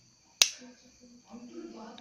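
A single sharp click about half a second in, from a small plastic tool working against the circuit board of an opened LED bulb.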